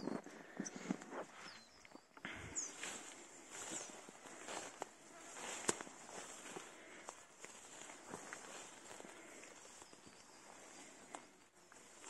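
Footsteps rustling through tall grass and ferns on a forest floor, with faint birdsong: a few short high chirps about three seconds in.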